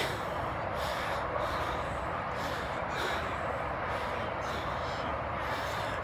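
Distant highway traffic: a steady rush of passing vehicles.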